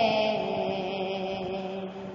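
Devotional chant-style singing: one long held note that slowly fades away, steady in pitch.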